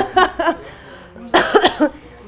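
A person coughing once, a short burst about one and a half seconds in. A few brief voice sounds come at the start.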